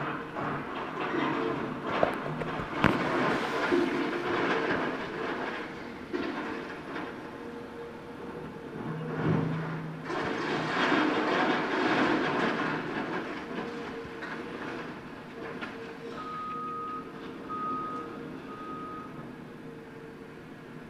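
Caterpillar excavator demolishing a masonry wall: its engine runs with a steady hum while the bucket breaks the wall, with two sharp cracks a couple of seconds in and two long spells of crumbling, falling rubble. Near the end a backup alarm beeps three times.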